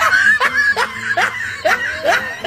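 A person laughing in a run of short, rising bursts, about two or three a second.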